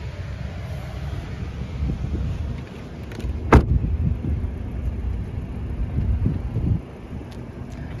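The 2021 Audi Q5's door shutting once, a single solid thud about three and a half seconds in, over a steady low rumble.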